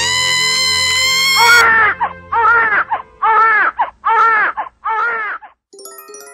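A woman's long, held scream breaks off about a second and a half in, and a newborn baby then cries in five short wails.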